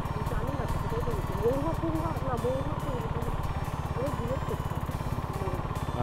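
Motorcycle engine running steadily as the bike cruises along a road, a fast, even low pulsing heard from the rider's seat.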